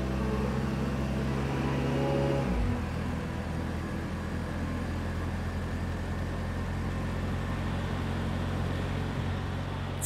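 City street traffic noise under low, sustained music tones that shift to a new chord about three seconds in.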